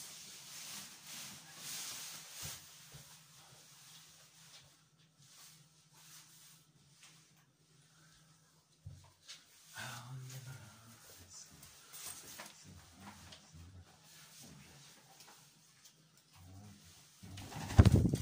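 A female rose-ringed parakeet making occasional soft calls, with the rustle of a padded jacket being put on near the start.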